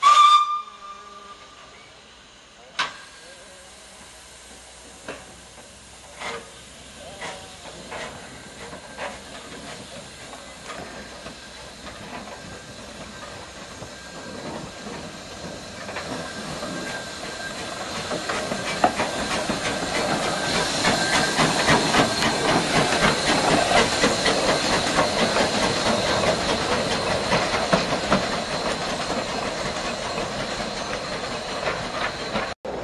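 Saddle-tank steam locomotive giving a short whistle blast, then setting off with its cylinder drain cocks hissing and its exhaust beats starting slow, about a second apart, and quickening as it gets under way. The sound grows louder in the second half as the engine comes closer.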